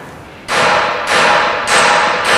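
Range Rover air-suspension valves being opened from the diagnostic software, giving three short hisses of air about half a second apart, each starting suddenly and fading.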